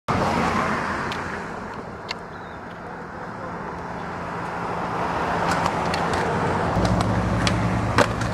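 Steady road traffic noise with faint voices. About seven seconds in, a skateboard starts rolling on concrete, a low rumble with a few sharp clicks.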